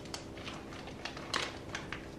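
Plastic packet rustling and crinkling in a few short, light clicks as thick poppy seed paste is squeezed out of it into a stainless steel bowl.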